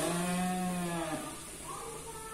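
A long low voiced note, held steady for about a second with a short rise at the start and a drop at the end. Under it runs the steady hiss of oil frying in the wok.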